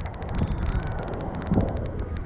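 Wind buffeting a camera microphone held just above the water, a steady low rumble, with faint sloshing of the water around it.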